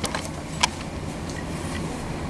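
A steady low hum with a few light clicks in the first half second or so.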